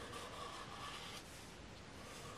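Faint scratch of a felt-tip marker drawn along paper, a little stronger for about the first second, over quiet room tone.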